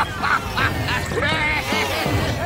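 Many overlapping cartoon voices chattering without clear words: short calls rising and falling in pitch, crowding over one another.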